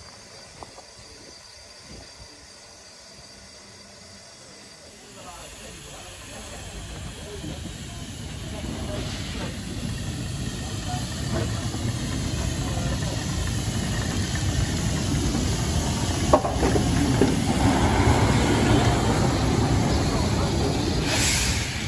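Steam hissing from a narrow-gauge steam locomotive standing at a platform. It is quiet at first, then builds steadily from about a quarter of the way in and grows louder through the rest.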